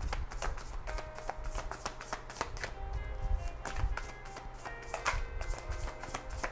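A deck of tarot cards being shuffled by hand: a rapid, continuous run of soft card clicks. Quiet background music with sustained notes plays underneath, starting about a second in.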